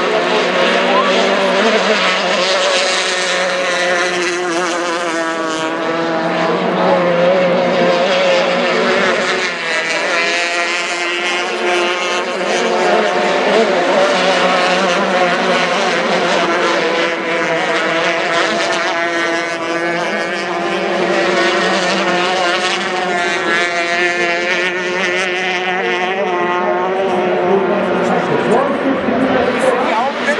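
Outboard engines of several Formula 350 racing hydroplanes running at high revs as the boats race past. A loud, sustained multi-tone engine whine whose pitches waver and shift against each other.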